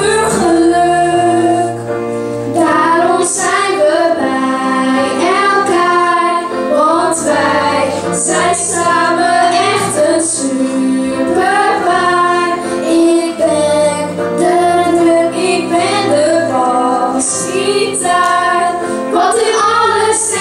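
Children singing a song over an instrumental accompaniment, with held bass notes under the voices, amplified through a PA.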